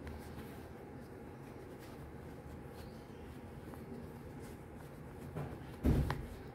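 Quiet handling of a cotton fabric outfit being pulled over a stuffed fabric bunny's feet, faint rustles over a steady low room hum, with a short bump near the end.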